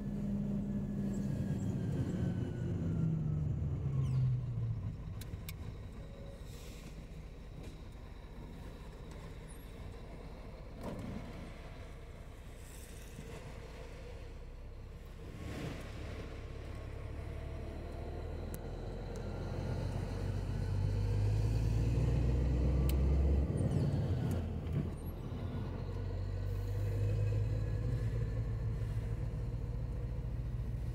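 Diesel engine of an unladen truck pulling along the highway. Its note falls away over the first few seconds, then builds and grows louder from about 18 seconds, cuts back sharply about 23 seconds in, and runs on steadily.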